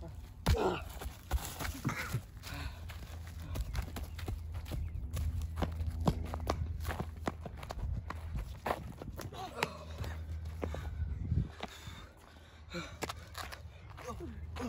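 Scuffling and footsteps on wood chips and concrete as two boys wrestle, with many short knocks and scrapes, and brief grunts and gasps in between.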